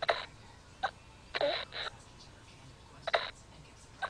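Infant simulator doll's built-in feeding sounds played through its speaker while it is being bottle-fed: about five short, separate sucking or gulping noises, with a longer gap before the last one near the end.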